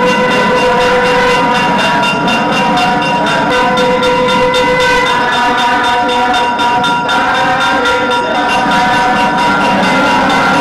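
Temple reed-pipe music, typical of a nadaswaram, holding long loud notes that change pitch every second or two over a steady drone, with drum strokes underneath.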